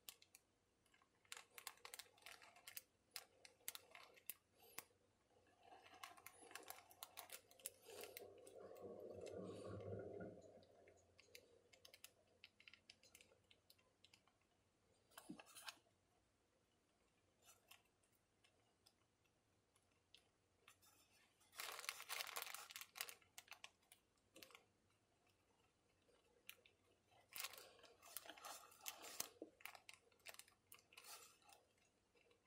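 A pen nib scratching and ticking across paper in short bursts of writing, with pauses between them. A duller, softer rub about eight to ten seconds in.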